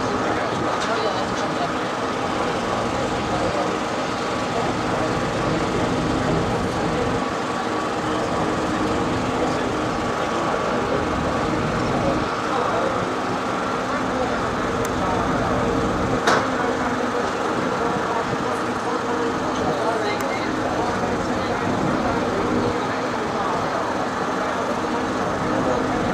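A river cruise boat's engine running steadily, heard from inside the boat as a constant hum under a wash of noise, with a single sharp click about sixteen seconds in.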